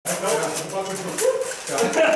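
Men talking, with faint clinks from armour and steel weapons during sword-and-buckler sparring.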